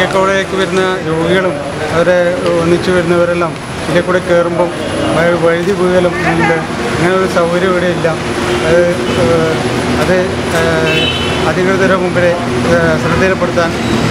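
A man speaking to the camera over steady road-traffic noise.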